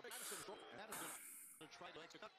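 Faint speech in the background, with two short stretches of high hiss.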